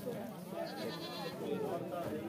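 A goat bleating once, a wavering call of almost a second starting about half a second in, over background voices.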